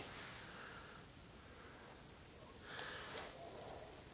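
Quiet background hiss with one brief, soft noise a little under three seconds in.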